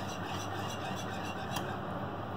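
A wire whisk stirring a thin chocolate milk mixture in a saucepan: a soft, steady swishing and scraping against the pan, over a low steady hum.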